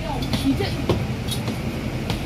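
Interior of a double-decker bus under way: a low steady drone from the bus, with a few short knocks, rattles and brief pitched squeaks over it.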